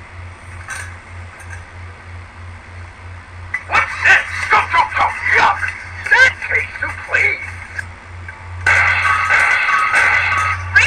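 Background music with a steady pulsing beat. From about four seconds in, a cartoonish voice-like run of sounds with bending pitch and no clear words, and near the end a louder held chord comes in.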